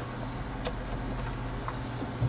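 Two faint light clicks about a second apart as a DDR3 SO-DIMM laptop memory module is fitted into its slot, over a steady low hum.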